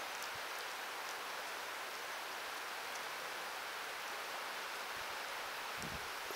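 Steady, even rush of a fast-flowing creek.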